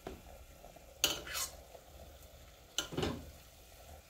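Metal spoon scraping and clinking as chicken curry is scooped up and spooned into a tender coconut: a couple of short scrapes about a second in and another near three seconds, over a faint low hum.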